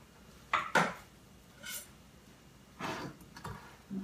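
A kitchen knife and utensils knocking and clinking on a wooden cutting board and countertop: two sharp knocks about half a second in, then lighter knocks and clicks near three seconds.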